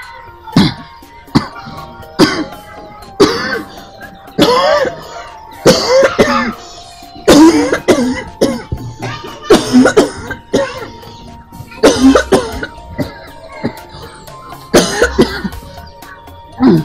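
A woman coughing over and over in hard fits, her voice breaking into pained cries between coughs, over background music that holds long steady notes.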